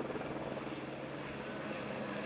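Helicopter hovering with a sling-load cargo hook out on its long line, heard as a steady, fairly faint drone.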